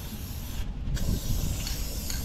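Aerosol spray can of gloss enamel hissing as it is sprayed onto a steel truck frame, with a brief break in the spray under a second in. Wind rumbles on the microphone underneath.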